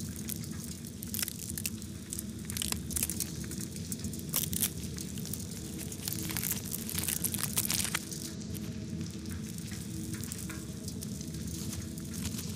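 Amplified irregular crackling and clicking from a butterfly pupa as the adult breaks out of its case, over a steady low hum.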